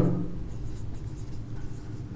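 Marker pen writing on a whiteboard: faint, irregular scratchy strokes over a low steady hum.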